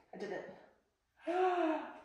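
A woman's sharp gasp, then about a second later a drawn-out 'ohh' of discomfort as the glucose-monitor applicator pokes her arm.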